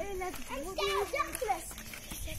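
Children's voices talking quietly, the words unclear.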